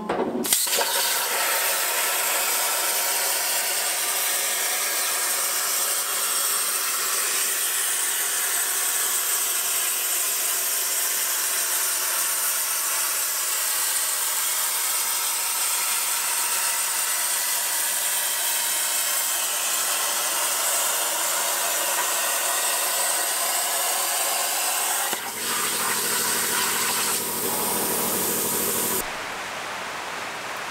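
PlasmaCam CNC plasma cutter cutting 2 mm 316 stainless steel sheet: a loud, steady hiss of the arc and air blast that starts about half a second in. The sound changes character about five seconds before the end, then drops away shortly before the end.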